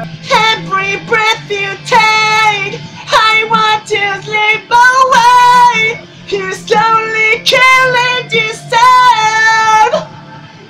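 A young man's solo voice singing a rock ballad in a high register, with several long held notes of about a second each, over a steady low backing line.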